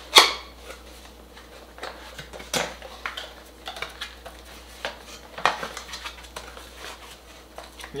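A small cardboard box being handled and opened: a sharp knock right at the start, then scattered cardboard clicks and rustles as its flaps are folded back and the wrapped charger inside is handled.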